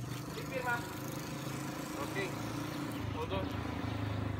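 Indistinct voices of a few people over a steady low engine hum.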